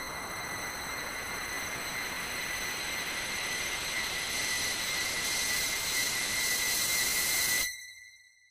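Sound-design effect for a horror film: a hissing rush with a steady high whistling tone through it. It grows brighter and louder over the seconds and cuts off suddenly near the end.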